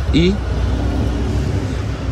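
Steady low rumble in the background, with a brief spoken "e..." at the start and no distinct handling noises.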